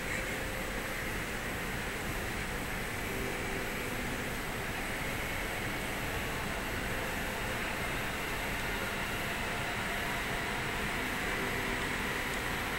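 Steady outdoor ambient noise, a low rumble and hiss with no distinct events.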